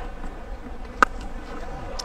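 A single sharp crack about a second in: a cricket bat striking the ball in a hard-hit shot, over low steady background noise.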